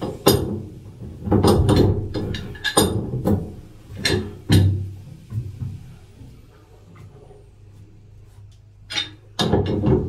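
A pipe wrench clanking and knocking against a boat's rudder shaft stuffing box cap as the cap is tightened to stop a seawater leak: irregular metallic knocks with some ringing, bunched in the first half and again near the end, over a low steady hum.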